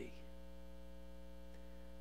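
Steady electrical mains hum, a low buzz with many evenly spaced overtones that stays unchanged throughout.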